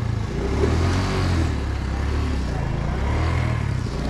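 Small motorcycle engine running steadily at low road speed, heard from on board the moving bike, with road and wind noise.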